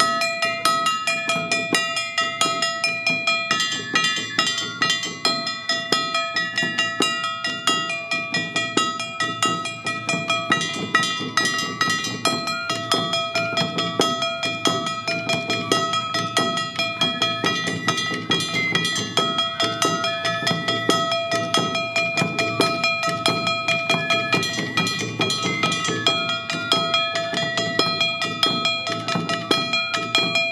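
Awa Odori festival band playing: a shinobue bamboo flute melody over a quick, steady beat of taiko drums and a clanging kane hand gong.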